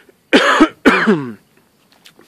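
A man coughs twice, about half a second apart, each cough trailing off lower in pitch.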